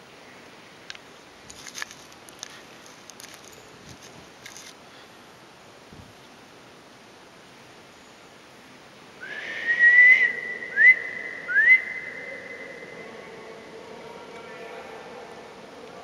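A person whistling in a stone church with a long echo. The first note slides up to a high held pitch, two quick upward slides follow, and the note then fades slowly as it rings on in the vaulted space.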